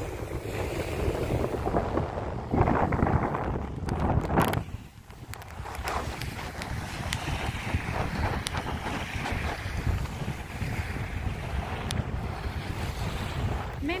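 Wind buffeting the microphone in gusts, easing briefly about five seconds in, over small lake waves washing onto a sandy shore.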